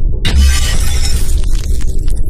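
Glass-shattering sound effect: a sudden loud crash of breaking glass about a quarter of a second in, over a deep low boom, with jagged shards of sound following it.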